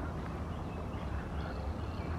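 Quiet outdoor background noise: a steady low rumble with no distinct events.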